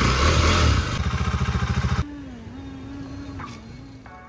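Motorcycle engine revving as the bike pulls away, its exhaust firing in rapid even pulses; about two seconds in the sound cuts abruptly to a quieter, steady engine drone with a wavering hum.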